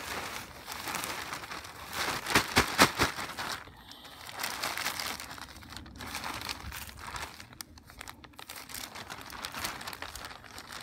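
A plastic bag of cow manure crinkles and rustles as it is emptied and handled. There is a burst of loud, sharp crackles about two to three seconds in, then quieter crackling.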